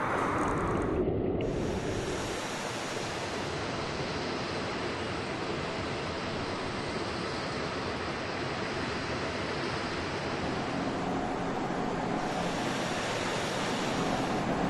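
Steady rushing noise with no clear rhythm, and a faint steady hum joining late on.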